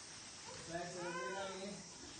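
A child's drawn-out wordless cry, rising and then falling in pitch, lasting a little over a second.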